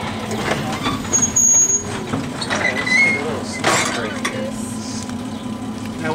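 Ride noise of a 1911 Huntington Standard streetcar rolling slowly: a steady hum and rumble, with two sharp clacks from the wheels and brief high squeaks.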